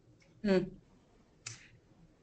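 A person's short "hmm", then a single short click about a second later.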